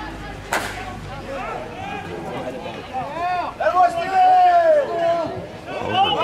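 A single sharp crack of a slowpitch softball bat hitting the ball about half a second in, followed by several voices shouting across the field, with one long drawn-out shout in the middle.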